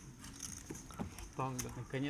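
Quiet poker-table ambience: a few soft clicks of poker chips being handled, with faint voices coming in near the end.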